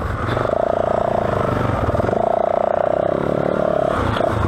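Yamaha WR450F single-cylinder four-stroke dirt-bike engine running steadily while under way on a dirt trail, its note easing off briefly twice.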